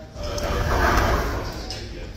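A long slurp of rice noodles and broth from a bowl of chicken pho, swelling to its loudest about a second in and then fading.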